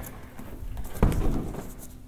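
Handling noise from a large carpet-faced bed mat being shifted and laid into a pickup's bed: soft rustling and scraping, with one dull thump about a second in.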